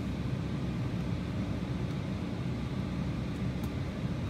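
Steady low hum and rumble of background noise inside a parked car's cabin, even in level throughout.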